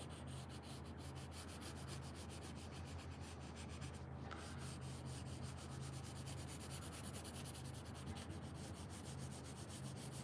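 HB graphite pencil shading on paper: quick, faint back-and-forth scratching strokes in a steady run, with a short break about four seconds in.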